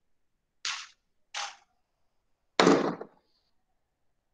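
Three short handling knocks and rustles as tools are put down on a wooden tabletop, the loudest about three seconds in, fitting a pair of cutting pliers being set down.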